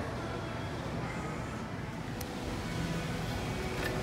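Steady indoor background noise of a large, busy shop: a low, even hum with a faint murmur of distant voices and no distinct events.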